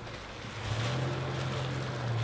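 A low, steady motor hum sets in about half a second in, under light rustling of plastic bags being handled.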